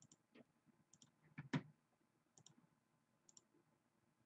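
Near silence broken by faint double clicks of a computer mouse, four times, and a soft knock about a second and a half in.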